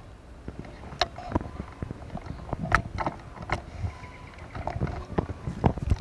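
Handling noise: irregular clicks, knocks and rubbing on the camera and handheld clip-on microphone over a low rumble, as the camera is moved from the scenery round to face the person.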